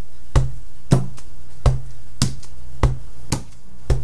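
Rubber stamp on a wooden block tapped down again and again, about seven sharp taps roughly every half second, onto a black ink pad and onto a quilted car sunshade.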